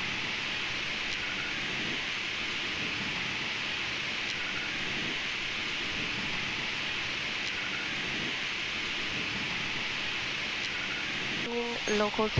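Steady, even rushing hiss of air in a Boeing 777 flight deck while the airliner taxis, with no tones or knocks in it.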